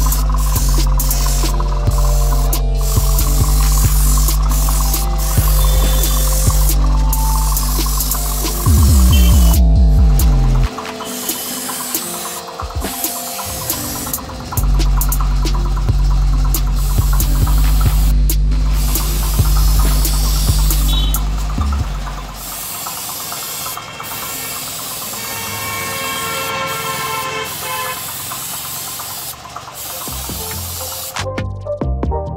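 Background music over the hiss of a compressed-air gravity-feed spray gun spraying paint, stopping and starting as the trigger is worked.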